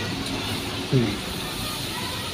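Steady background hum of passing road traffic, with one short falling voice sound about a second in.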